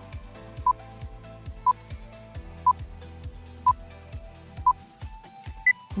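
Quiz countdown timer beeping once a second, five short beeps at one pitch and then a single higher beep, over background music with a steady beat.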